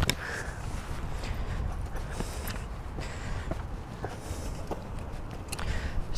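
Footsteps on concrete from rubber boots, with scattered light taps over a steady low rumble and a sharp click at the very start.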